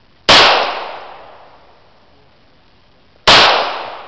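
Two shots from a 9mm Beretta pistol, about three seconds apart, each a sharp crack followed by an echo that dies away over about a second and a half.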